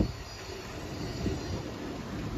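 Street background noise with a low rumble and a faint, thin high-pitched squeal or whine.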